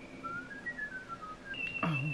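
A high, thin whistled tune of single pure notes that step up and then back down, ending on a held higher note.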